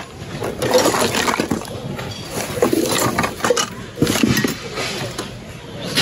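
Hands rummaging through a bin of jumbled goods: steady rustling with irregular clinks and clatters of wire coat hangers and hard plastic.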